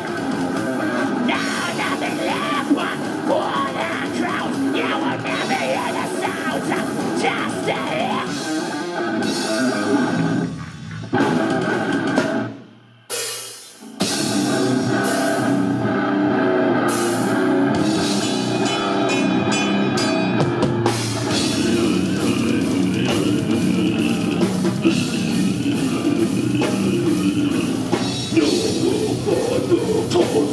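Brutal death metal band playing live: distorted electric guitars and a drum kit with cymbals. About halfway through the band briefly stops, then comes back in.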